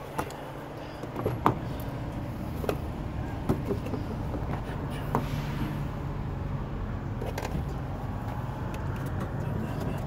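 A car's rear door being unlatched and swung open, with a few sharp clicks and knocks from the latch and handling. The loudest comes about a second and a half in. A steady low hum runs underneath.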